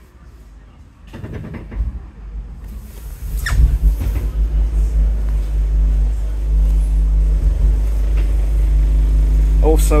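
Scania N230UD double-decker bus's five-cylinder diesel engine heard from the upper deck. The low rumble builds from about a second in and settles, after about four seconds, into a loud, steady low drone.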